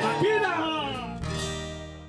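Live acoustic guitar and a man's singing voice: the last sung phrase ends about half a second in, and the guitar and music ring on and fade out toward the end.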